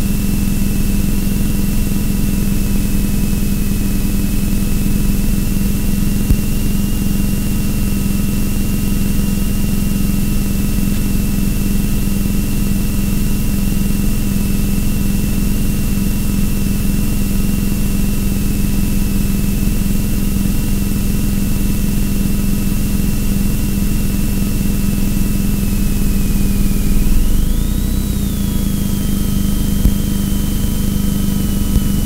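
A car engine idling steadily, with a thin high whine over a low hum; near the end it revs up briefly, the whine rising in pitch and settling a little higher.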